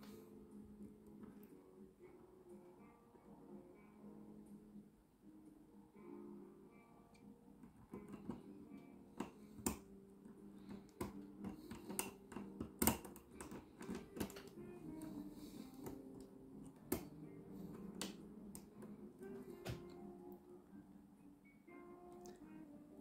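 Soft background music over irregular small sharp metallic clicks of a hook pick and tension wrench working the pins of a four-pin Hunit euro cylinder, the clicks more frequent in the second half.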